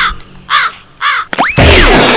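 Three harsh bird caws, about half a second apart, then a quick rising glide and a loud burst of sound near the end.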